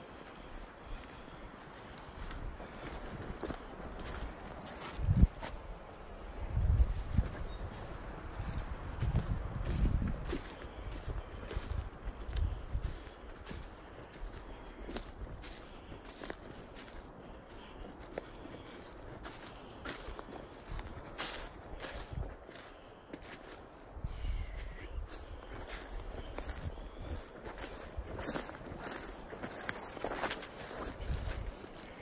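Footsteps through dry leaf litter and brush: an uneven run of crunches and crackles, with bursts of low thumps and rumbles.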